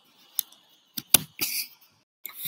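A few short, sharp clicks close to the microphone: one early, then a quick cluster of three or four around a second in, the loudest among them, with quiet between.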